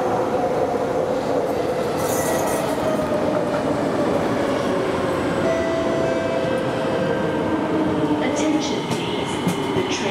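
Singapore MRT electric train running on elevated track as it comes into the station, with a steady rumble of wheels on rail and a motor whine in several tones that falls slowly in pitch as the train slows. There is a brief hiss about two seconds in, and a few clicks near the end.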